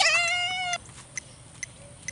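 Metronome ticking steadily, about two ticks a second. Right at the start a single loud, high-pitched cry lasts under a second; it drops quickly in pitch and then holds.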